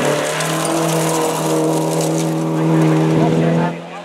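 Classic Alfa Romeo Giulia rally car's engine held at high revs as it passes on a gravel stage, with a steady, nearly level note over the hiss of tyres on gravel. The note ends abruptly near the end.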